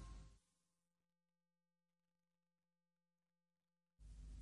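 Near silence in the gap between songs on an album: the last of the music fades away in the first half second, leaving only a very faint steady hum.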